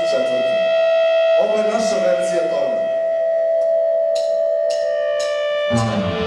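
An electric guitar holds one long sustained note. About four seconds in come four sharp drumstick clicks counting in. The full rock band, drums and distorted guitar, comes in loudly just before the end.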